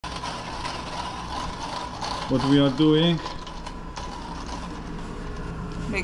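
Hand-cranked coffee grinder grinding coffee beans: a continuous gritty crunching made of fine, rapid clicks.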